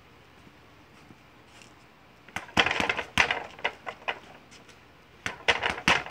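Gloved punches smacking a Ringside reflex bag on its spring stand: a rapid run of sharp hits starting about two seconds in, a brief pause, then another quick flurry near the end.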